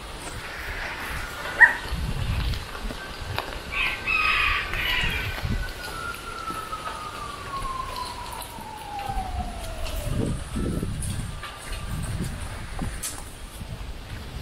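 Gusty wind buffeting the microphone and stirring the trees, with a rooster crowing about four seconds in. A thin tone then slides slowly down in pitch over several seconds, and there is a sharp click early on.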